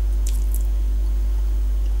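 Orange flower water poured from a small glass into a stainless steel bowl of creamed butter and sugar, with a few faint, soft wet splashes in the first half second. A steady low electrical hum runs underneath.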